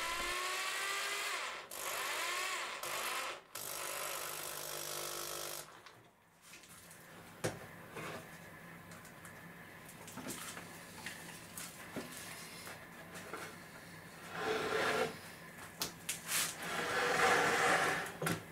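Corded power drill driving screws into plywood in several short runs, its motor pitch sagging and recovering as each screw bites. After that come quieter clicks and scraping as clamps and the board are handled.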